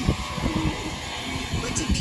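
Animated cartoon soundtrack: a steady rushing noise under brief, wordless voice sounds.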